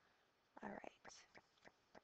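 Near silence with one softly spoken word, then faint, evenly spaced ticking, about three ticks a second, starting about a second in.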